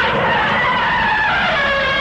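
A long screeching monster cry from the film soundtrack: several tones together, sliding slowly down in pitch.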